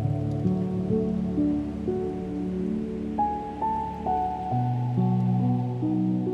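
Slow, relaxing new-age solo piano: single held melody notes stepping over low sustained chords. A soft wash of ocean surf lies underneath.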